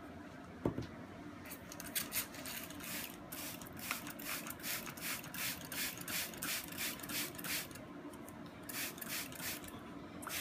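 Handheld plastic trigger spray bottle squirting water onto dye-soaked silk wrapped on a PVC pipe, in quick repeated hissing sprays, about two to three a second. The sprays pause briefly near the end, then a few more follow. The water wets the silk to push the dye deeper and blend the colours.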